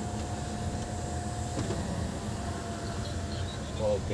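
Hyundai Creta's electric sunroof motor running with a steady whine over a low cabin rumble, pausing with a click about one and a half seconds in and then starting again.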